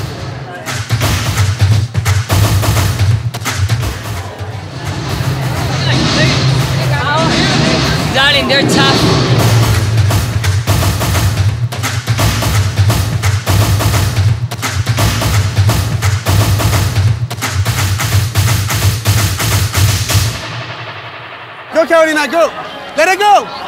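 Live drum line playing a fast, driving marching beat of snare and bass drums, which stops about twenty seconds in.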